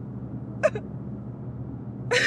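A woman crying: one short catching sob a little over half a second in, over a steady low hum.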